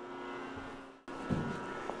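Steady hum of the power hammer's electric motor running with no strikes, with a brief dropout about a second in.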